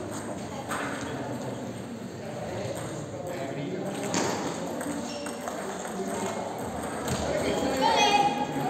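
Table tennis ball clicking off paddles and bouncing on the table in a few sharp knocks, over a steady background of voices in a large hall.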